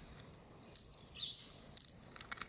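Small sharp clicks of pearls knocking together as they are picked from a freshwater mussel and dropped into a palm: one click, then a quick cluster near the end. A short bird chirp sounds in between.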